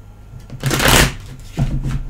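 A deck of tarot cards being shuffled by hand: a loud rustling burst about half a second in, then a softer one near the end.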